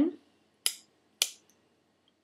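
Two sharp plastic clicks a little over half a second apart: Numicon pieces knocking together as the ten piece is set against another piece.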